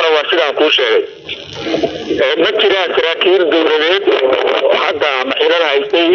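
Only speech: one voice talking without a break, with a thin, radio-like sound.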